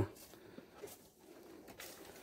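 Quiet pause with faint background sound and a faint bird call, likely a dove cooing.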